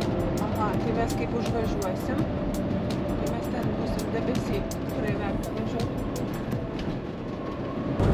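Steady road and engine noise heard inside a camper van's cab as it drives along, with faint indistinct voices.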